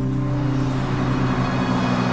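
A car passing close by, its whoosh swelling up about a third of a second in, over a steady low held music chord.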